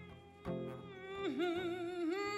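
A wordless hummed melody held with vibrato over strummed acoustic guitar, the humming voice coming in about a second in.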